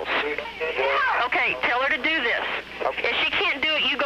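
Continuous speech with the narrow sound of a telephone or radio line: the 911 call carrying on, overlapped and not made out as words.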